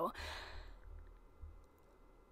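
A person's breath out, a soft sigh lasting about a second, followed by a faint low hum.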